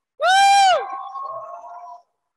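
A single high-pitched whoop from a person cheering, loud and held for about half a second, trailing into fainter drawn-out calls.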